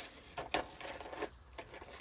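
Faint handling noise: a few light clicks and rustles as a box of lip liner pencils is picked up and handled.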